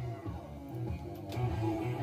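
Guitar-led music playing from a Roadstar GrandPrix Double-Auto car cassette radio, heard through the car's speaker.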